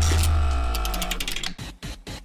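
A musical transition sting between news segments: a deep bass tone with a rapid run of ticks over it, fading out about one and a half seconds in.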